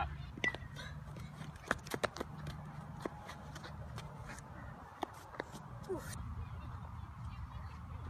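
Scattered light knocks and clicks from baseball fielding practice: a ball bouncing on the sand and smacking into leather gloves, over a low steady hum. A short metallic ping comes about half a second in.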